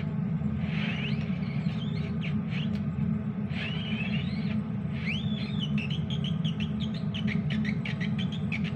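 A metal fork tapped and scraped on a pot's glass lid to make a beat: a few short squeaky rising-and-falling tones in the first half, then a quick run of light ticks from about five seconds in. Underneath is a steady low rumble from the pot boiling on the stove.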